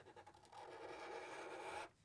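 Faint scratch of felt-tip Sharpie markers drawing lines on marker paper, one steady stroke that starts about half a second in and stops just before the end.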